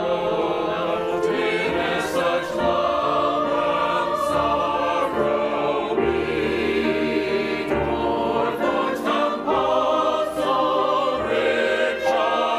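Mixed church choir of men and women singing a choral anthem, several voice parts holding chords together that change every second or so.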